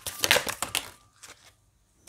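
Tarot cards being shuffled in the hands: a quick run of papery flicks and rustles in the first second, then a few faint ones.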